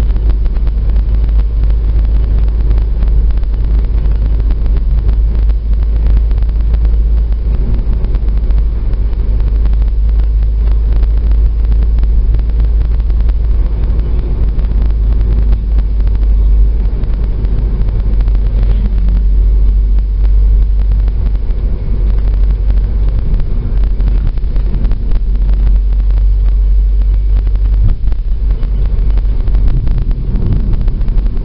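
Car driving at steady speed on a country road, heard from inside the cabin: a loud, even low rumble of engine and road noise.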